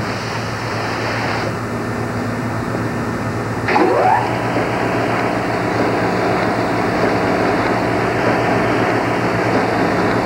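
Steady machinery hum and noise of a garment workroom, with a low drone underneath and a short rising whine about four seconds in.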